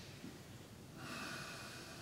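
A slow, deep breath out through the nose as a seated meditator settles upright after a bow. The breath is faint and airy, with a slight whistling tone in it, and starts about a second in.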